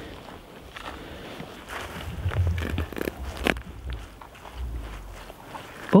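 Footsteps on dry grass and lake ice, a few scattered clicks, over a low wind rumble on the microphone.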